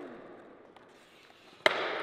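A single sharp clack of a skateboard striking the concrete floor about one and a half seconds in, with a short ringing smear after it. Before it there is only low-level room noise.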